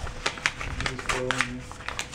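Crinkling and rustling of paper and plastic packaging being handled, a run of small crackles and clicks. About a second in there is a short murmur from a voice.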